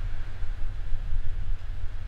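Steady low background rumble with a faint hiss, wavering in level; no speech.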